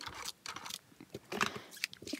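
Paper and card being handled and pressed down on a craft mat: soft scratchy rustling with a few light ticks.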